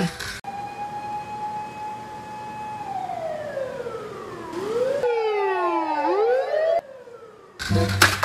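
Fire engine siren: a held tone that slides down in pitch, then, after a sudden cut, several overlapping wails falling and rising. It stops sharply about a second before the end.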